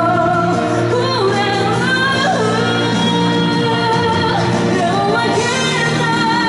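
A woman singing a pop song live into a handheld microphone over loud, steady pop accompaniment; her voice slides between held notes.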